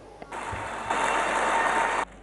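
Audience applause, growing louder about a second in and cut off abruptly at the end.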